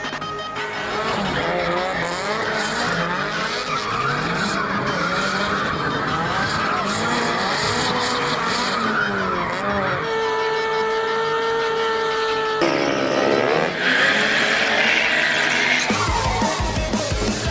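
A car engine revving up and down hard while the tyres squeal through a drift. About ten seconds in, the engine holds one steady high note for a couple of seconds, then its pitch drops and climbs again, and a sustained tyre squeal fills the last two seconds.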